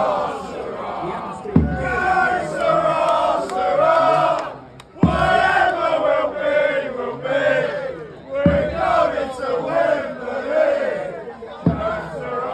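Crowd of football supporters chanting together in unison, loud and continuous. A marching drum thumps about every three and a half seconds, four beats in all.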